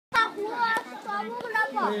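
Voices only: children and adults talking excitedly over one another, one calling "Hey" near the end, after a sharp click at the very start.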